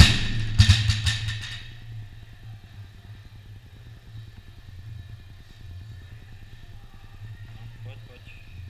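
A loaded barbell with rubber bumper plates, dropped from overhead, hits rubber gym flooring with a loud bang, then bounces and rattles for about a second and a half before settling. A steady low hum runs underneath.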